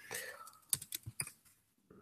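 A quick run of about six computer keyboard keystrokes, about a second in, as lines of text are deleted in a code editor.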